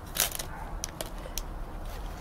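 Light handling noise of fingers fitting a small candy cane onto a gummy-block house on a paper plate: a short crackle near the start, then a few soft clicks.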